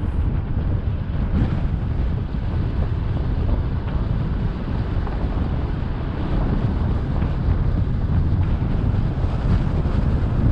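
Wind buffeting a vehicle-mounted GoPro's microphone over the steady low rumble of a vehicle driving slowly along a paved road.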